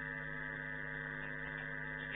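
Steady electrical mains hum, a low buzz with several unchanging tones stacked above it, with no other sound.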